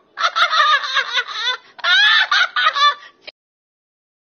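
A woman laughing loudly and high-pitched in two long bursts that cut off suddenly about three seconds in.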